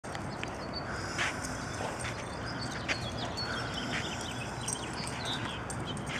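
A Bouvier des Flandres running on dirt and grass: scattered soft paw falls over a steady outdoor background, with a few short high chirps.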